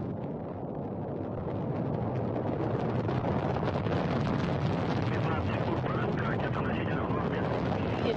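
Soyuz rocket's first stage, its four strap-on boosters and single core engine firing during the climb just after liftoff: a dense, steady noise that grows louder over the first few seconds and then holds.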